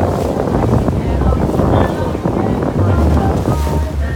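Wind rumbling and buffeting on the microphone of a small boat at sea, over the wash of waves breaking against rocks.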